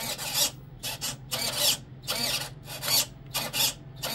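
RC boat steering servo whirring in about seven short bursts, each rising and falling in pitch, as it swings the rudder linkage back and forth; a steady low hum sits underneath.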